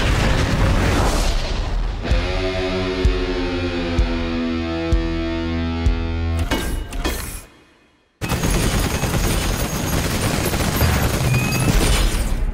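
Film trailer soundtrack of music and effects. Dense gunfire-like hits open it, then a held chord rings with a low hit about once a second. It fades to a moment of silence about eight seconds in, then cuts back in with a sudden loud, dense burst of music and effects.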